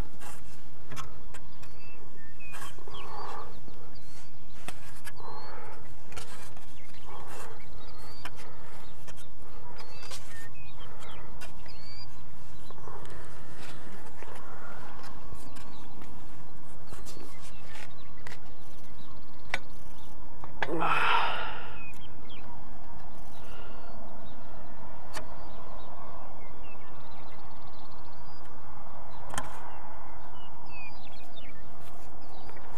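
A steel wrench working the hub retaining nut of a small horizontal wind turbine: scattered sharp metal clicks and taps. A few short breathy vocal sounds come with them, one louder about two-thirds of the way through, and birds chirp faintly in the background.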